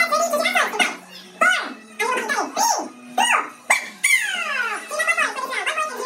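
Excited shouting and exclaiming from several people, their voices swooping sharply up and down in pitch, with a long falling cry about four seconds in.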